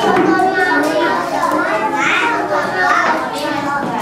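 A group of young children talking and calling out at once, a steady overlapping chatter of small voices.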